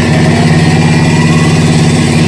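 An engine running loudly and steadily at a constant speed.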